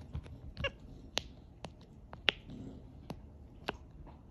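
Silicone pop-it fidget toy being pressed bubble by bubble, giving about six sharp, irregular pops, the loudest a little past two seconds in.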